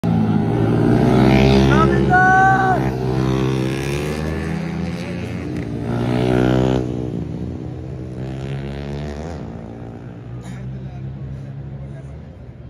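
A sport motorcycle's engine revving hard through a tight corner on a race circuit, its pitch rising and falling with throttle and gear changes. It is loudest as it passes close, then fades away over the last few seconds.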